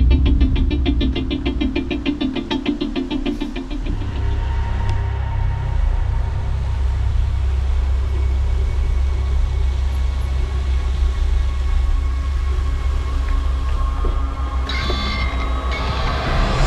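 Mountain bike rolling over a rough dirt-and-grass path, with a steady deep wind rumble on the microphone. A rapid, even clicking runs for the first four seconds, then stops.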